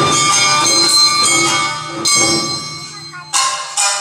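Awa Odori festival band playing live: drums, metal hand gongs, shamisen and bamboo flutes with a brisk beat and bright metallic ringing. The music thins out and drops in level about two seconds in, then comes back in loudly a little after three seconds.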